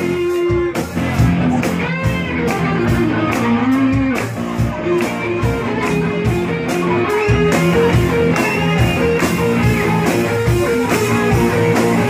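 Live rock band playing loudly, with electric guitars over a steady drum beat.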